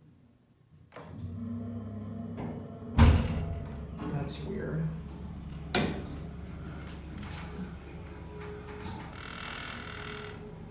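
Vintage hydraulic elevator car in operation after a floor button is pressed: a steady low hum starts about a second in, with a loud thunk about three seconds in. A sharp metal click near six seconds comes as the hinged stainless-steel telephone cabinet door is pulled open.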